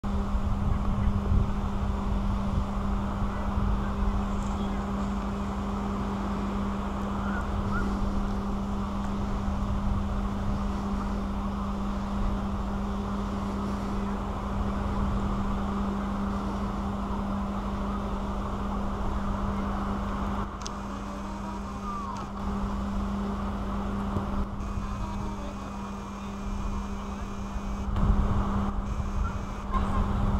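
A steady low mechanical hum under a haze of outdoor noise, with wind buffeting the microphone in gusts, strongest at the start and again near the end.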